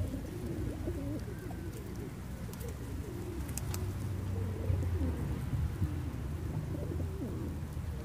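A flock of feral rock pigeons cooing, many low cooing calls overlapping one after another, over a low steady rumble.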